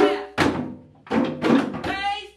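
A group of djembe hand drums and tall wooden drums struck with sticks, played together in several strokes about half a second apart, each stroke ringing briefly.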